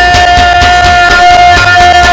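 Go-go band music: one long held note over steady drumming.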